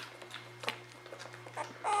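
Faint small squeaks and handling clicks from a newborn Weimaraner puppy held in a hand as it begins to yawn, over a steady low hum.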